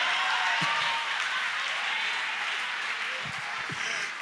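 Church congregation applauding in response to the sermon, with a few voices calling out, slowly fading.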